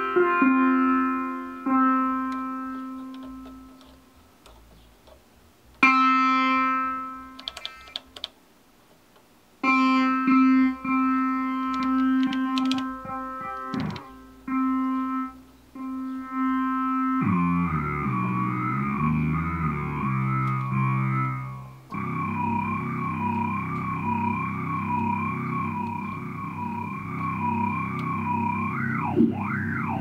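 Nord Lead synthesizer patch being played while its sound is shaped: single held notes at one pitch that die away, with gaps between them. About two-thirds of the way through it changes to a sustained tone with a slow, regular wobble in pitch, about once a second, over low bass notes that step up and down.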